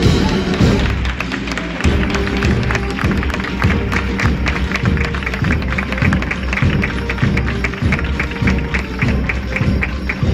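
A band playing a procession march, with a quick, steady drum beat of about three to four strikes a second.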